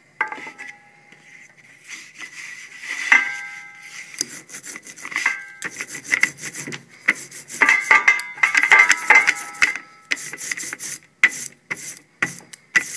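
Rubber brayer rolling ink onto a carved printing block: a sticky rubbing sound in irregular strokes, with a few knocks that ring briefly.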